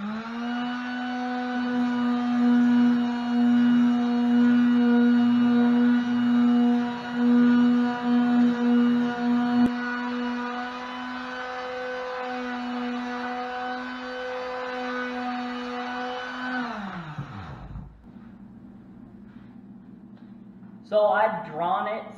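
Handheld electric palm sander running steadily while sanding down a wooden longbow limb, with a steady motor hum; about 17 seconds in it is switched off and winds down with falling pitch.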